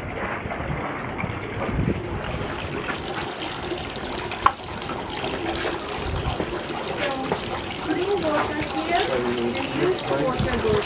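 Water trickling from a bamboo spout into a stone purification basin and splashing from bamboo ladles, with one sharp knock about halfway through.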